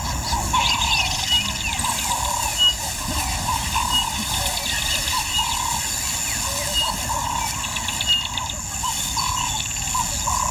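Wild birds calling: a low call repeated over and over, with short high whistled notes and chirps above it.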